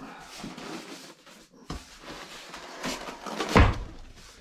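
Rustling and handling of a cardboard box and polystyrene packing as a packed spindle is lifted out, with a knock about two seconds in and a louder dull thump near the end as the polystyrene block is set down.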